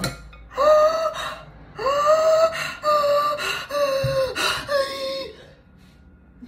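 Electric hand mixer whisking a thin milk mixture in a glass bowl, switched on and off in five short bursts: each time the motor's whine climbs as it spins up, holds steady for about a second, then cuts off.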